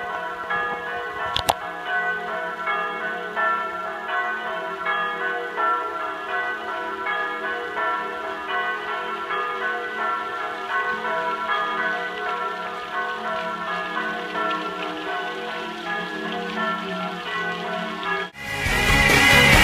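Church bells ringing continuously, many overlapping tones that pulse and sustain. There is a brief click about a second and a half in.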